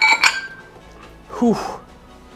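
The metal plates of a pair of plate-loaded dumbbells clink and ring briefly as the dumbbells are set down at the end of a set.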